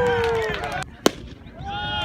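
A long, drawn-out shout from a voice at a baseball game, held and sliding slowly down in pitch until it breaks off a little under a second in. A single sharp pop follows about a second in, and another short shout comes near the end.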